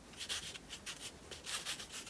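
Wide flat paintbrush scrubbing acrylic paint across paper in a series of short, scratchy strokes.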